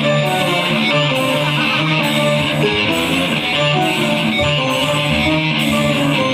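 Live rock band playing a loud, steady instrumental passage, led by a Telecaster-style electric guitar.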